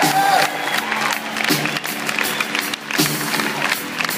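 A live band plays on, with acoustic and electric guitars, drums and congas holding a steady groove, while the audience cheers and applauds.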